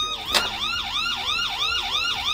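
Police siren sound effect in a fast yelp, the pitch rising and falling about four times a second, with a short click about a third of a second in.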